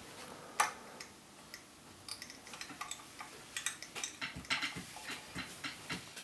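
Faint, irregular small clicks and taps of a thin metal tool working at a hollow-body electric guitar through its f-hole, with one sharper click about half a second in and quicker ticking in the second half.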